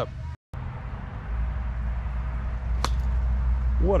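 Golf iron striking a ball: one sharp click about three seconds in, over a low steady rumble.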